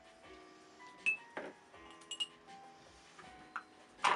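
Soft background music with held notes runs throughout. A few light clinks come about one and two seconds in, and a louder knock near the end as the papier-mâché piggy bank is set down on the table.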